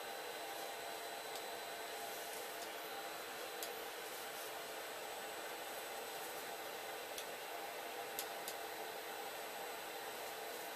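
Steady electrical or ventilation hum and hiss, with a few faint, separate clicks of FANUC teach pendant keys being pressed.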